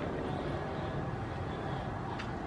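Steady running noise of a moving train heard from on board: an even rumble and rush of the wheels and rails with no distinct knocks.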